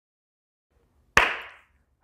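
A single sharp hand clap just past the middle, with a short room echo trailing off.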